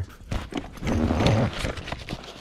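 Clatter and rustling as a hand rummages among hand tools in a soft fabric tool bag, with a few sharp clicks of metal tools knocking together, mixed with handling noise from the camera being moved.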